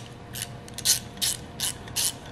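Small socket ratchet clicking in short bursts, about five in two seconds, as it is swung back and forth on a bolt.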